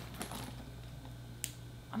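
Faint handling sounds of a pink Coach handbag being turned in the hands: a few small clicks from its gold metal hardware and dangling charm, the sharpest about a second and a half in, over a low steady room hum.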